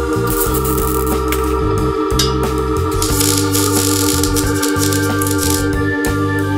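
Background music: sustained organ chords over a bass line that moves every half second or so, with light percussive ticks.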